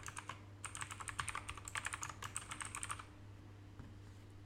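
Fast typing on a computer keyboard: a quick run of key clicks that stops about three seconds in. A faint low steady hum lies underneath.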